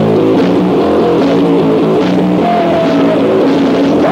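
Loud distorted electric guitar riffing through fast chord changes with a band behind it: a thrash/hardcore demo song.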